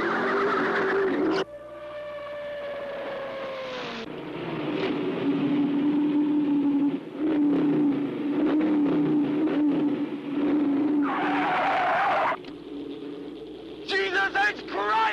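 Race car engine running at speed on a film soundtrack. About a second and a half in the sound cuts, and an engine note falls in pitch over a couple of seconds. A steady engine drone follows, with a short loud squeal of tyres near the end.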